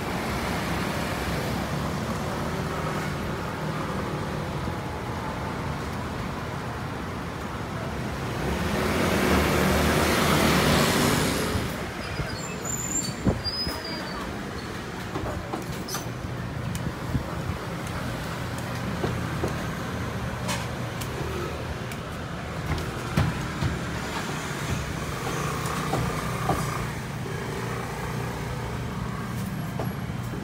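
Street traffic running steadily, with one vehicle passing loudly, swelling up and fading away between about eight and twelve seconds in. Scattered short clicks and knocks follow.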